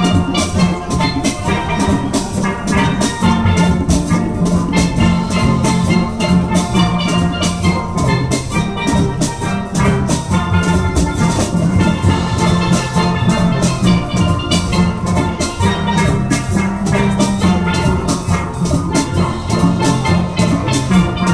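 A steel band playing live: several steel pans ringing out a melody and chords over drums keeping a steady beat.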